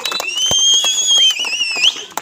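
A long, high whistle that bends up in pitch, dips and wavers, then rises sharply before it stops, over crowd chatter. A single sharp knock about half a second in.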